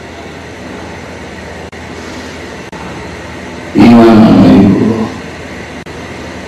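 Steady hiss and hum of a sermon recording's background, broken by a few tiny dropouts; about four seconds in, a loud shouted voice for about a second.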